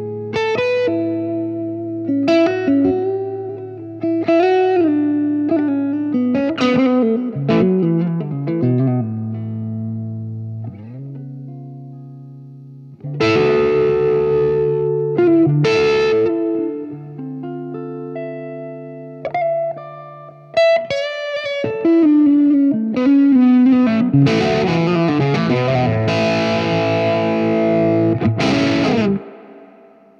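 Electric guitar played through a Marshall Drivemaster overdrive pedal into an amp, showing the pedal cleaning up with the guitar's volume rolled back. Sparse, near-clean edge-of-breakup phrases alternate with fuller, brighter distorted chords. The playing stops abruptly about a second before the end.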